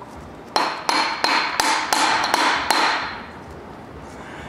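A hammer striking a large socket used as a driver to press a heated crankshaft timing sprocket onto the crank snout of a 454 big-block Chevrolet V8. About seven blows, roughly three a second, each with a metallic ring, begin about half a second in and stop a little before three seconds.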